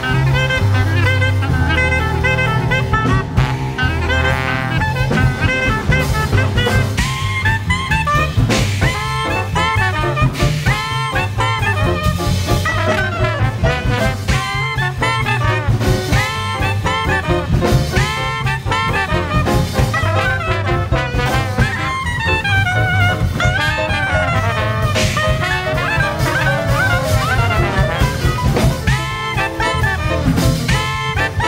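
Small swing jazz band playing an up-tempo number live: a clarinet plays the lead line in fast, bending runs over piano, walking upright bass and drum kit.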